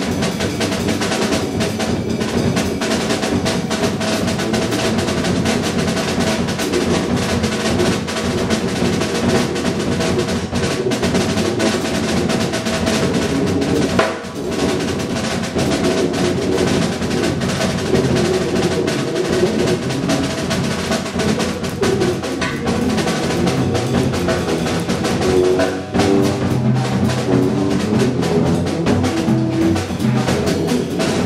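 Live free-improvised jazz from a large ensemble, led by busy drum and percussion playing: dense rolls and clattering small hits. A few held pitched tones sound underneath, and held low notes come in more clearly near the end.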